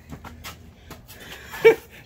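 A woman out of breath after a badminton rally: faint breathing, then one short, high-pitched breathy vocal sound, falling in pitch, about two-thirds of the way in.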